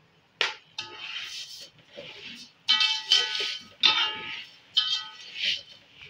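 Metal slotted spatula scraping and knocking against an aluminium pot as sugar is stirred into ghee. About four sharp knocks each leave the pot ringing briefly, with gritty scraping of the sugar between them.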